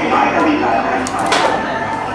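Indistinct voices from a film soundtrack playing in the room, with a few sharp clicks or clatters a little over a second in.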